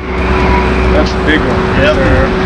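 Outdoor background noise: a steady low rumble with a constant hum running through it. Short snatches of voices come in from about a second in.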